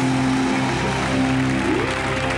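Live band playing the opening of a song with held chords, one note sliding upward near the end, while the studio audience's applause carries on underneath.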